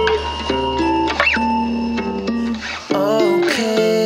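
Instrumental section of a pop song: plucked guitar chords over a steady low bass. About three seconds in, the bass drops out and a voice comes in.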